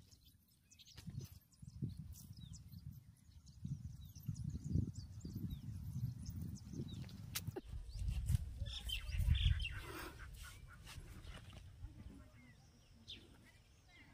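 Faint scraping and crumbling of dry soil as hands dig around a plant's root, in uneven low pulses with a few small knocks. Birds chirp now and then.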